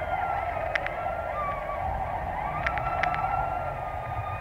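Ambient drone from an experimental cassette: a steady hiss-like band with faint, slowly wavering high tones over it. A few soft clicks come about a second in and again near the end.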